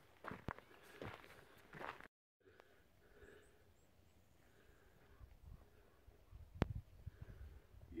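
Footsteps crunching on a gravel hiking path for about two seconds, then a sudden dropout. After it comes faint low rumbling with one sharp click near the end.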